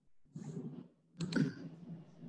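A few faint clicks and a brief soft rustle over a video-call audio line.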